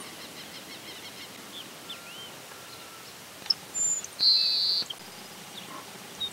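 Wild birds calling over a faint steady hiss of open country: scattered short high chirps, then a louder high buzzy note lasting about half a second around four seconds in.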